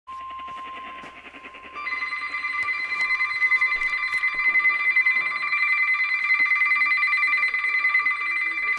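NOAA weather radio sounding an alert: a steady tone near 1 kHz, the 1050 Hz warning alarm tone, then about two seconds in a louder, rapidly pulsing electronic alarm of several high tones takes over, signalling an incoming weather warning.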